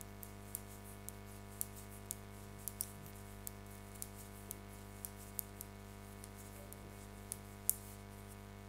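Metal knitting needles clicking lightly against each other as knit stitches are worked: small, irregular ticks about twice a second, fewer in the last couple of seconds, over a faint steady hum.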